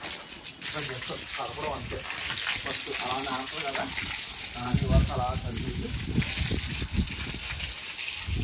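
Water gushing from a garden hose, the stream fanned out at the nozzle and splashing onto a wet concrete roof, a steady hiss. A couple of low thumps come near the middle.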